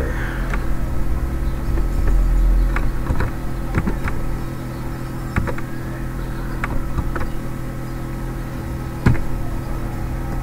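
Scattered single computer-keyboard key clicks as code is typed, over a steady low buzzing hum made of several fixed tones. The sharpest click comes about nine seconds in.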